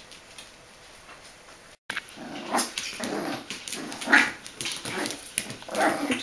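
Bichon Frisé puppies play-fighting, with growls and short yaps coming irregularly from about two seconds in; the first two seconds are faint.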